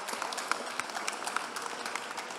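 Audience and panelists applauding: many hands clapping in a dense, steady patter.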